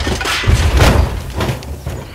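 A string of heavy, low booms and thuds, loudest from about half a second to a second in: dramatic impact sound effects in a radio play.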